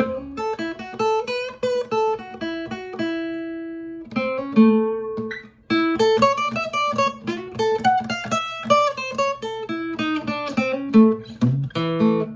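Steel-string acoustic guitar playing a single-note blues lick in A, built on chord shapes with chromatic approach notes rather than the pentatonic box. A note rings on about three seconds in, there is a short break just before six seconds, then a quicker run of notes.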